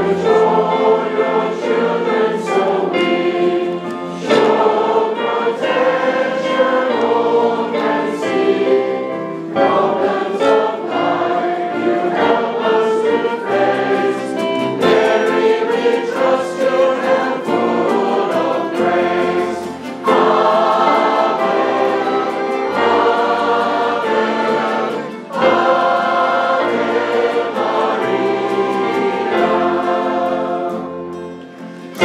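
A choir and congregation singing a hymn together, accompanied by violins, brass and an electric keyboard, in continuous phrases with short breaths between lines.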